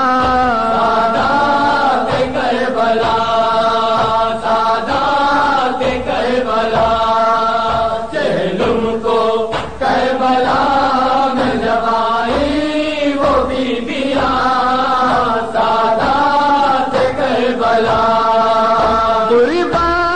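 A noha (Shia lament) chanted by a single voice in long, wavering held notes, with brief breaks about eight and ten seconds in.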